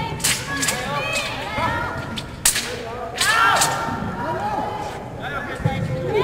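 Sharp slaps and thuds from a wushu broadsword routine on the competition carpet: several crisp cracks, the loudest about two and a half seconds in, with more at about three and a half seconds.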